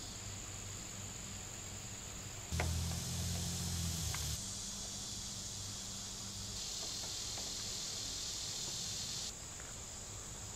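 Steady high insect chirring with a low hum beneath it. About two and a half seconds in, a louder stretch of noise lasts under two seconds, opened and closed by faint clicks from soldering tools on the battery pack.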